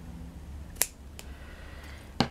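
Scissors snipping through lace trim: one sharp snip a little under a second in, then a fainter click shortly after.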